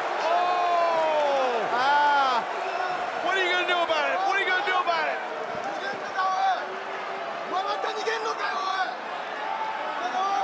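A man yelling loud, drawn-out shouts twice in the first two seconds or so, then shorter, higher yells a few seconds in, over arena crowd noise.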